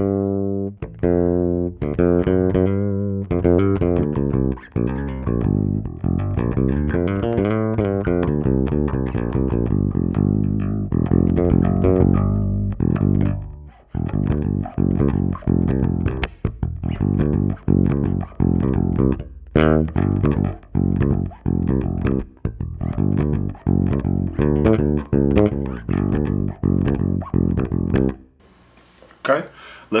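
Ibanez ATK810 electric bass played unaccompanied, a steady run of fingerstyle plucked notes and lines, heard with the bass's EQ mid control boosted all the way up. The playing stops shortly before the end.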